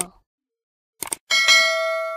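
A mouse click, then a bright bell-like chime that rings on and fades slowly: the sound of a subscribe-button animation with its notification bell.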